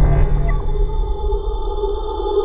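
Electronic intro-sting sound design: a deep rumble that drops away about half a second in, giving way to a sustained synth drone.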